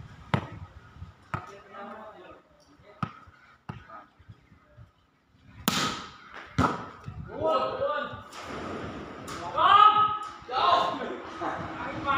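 A volleyball struck again and again in a rally, about six sharp hits over the first seven seconds. Players shout in the second half, the loudest sound near the end.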